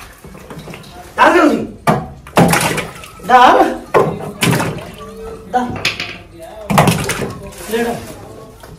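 Blocks of ice being broken up on a concrete floor and the chunks dropped into a plastic drum of water: a series of about five loud knocks and cracks, a second or so apart.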